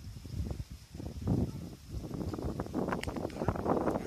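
Wind rumbling on the microphone, with irregular rustling crackles that grow busier after about a second.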